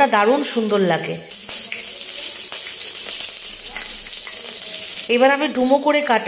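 Hot oil sizzling steadily in a kadai (wok), with a green chilli and nigella seeds frying in it. The sizzle comes up clearly about a second in and holds even until near the end.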